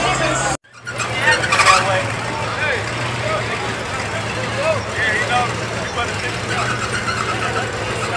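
Car running slowly with a steady low engine hum while people talk around it, with a louder moment about a second and a half in.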